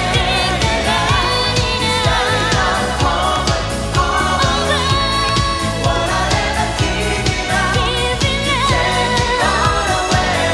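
A woman singing a Japanese pop song live over a full band, with a steady driving beat.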